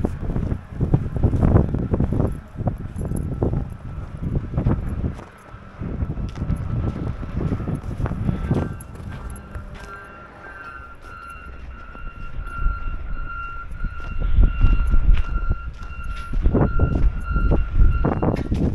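Footsteps in snow and wind buffeting the microphone give irregular low rumbles. About halfway through, a vehicle's backup alarm starts up and keeps beeping at a steady pitch, about two beeps a second.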